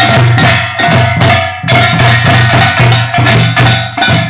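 Korean pungmul percussion ensemble playing together: small brass kkwaenggwari gongs clanging over janggu and buk drums in rapid, repeated strokes.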